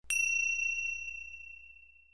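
A single high bell chime, struck once and left to ring, fading away over about two seconds.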